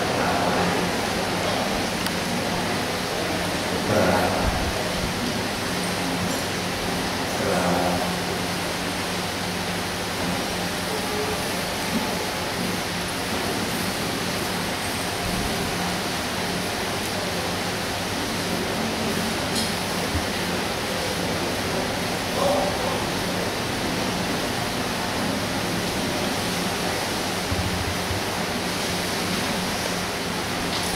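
Steady hiss of room background noise with a low electrical hum, broken a few times by brief, faint voices.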